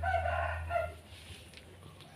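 A rooster crowing: one call that ends about a second in.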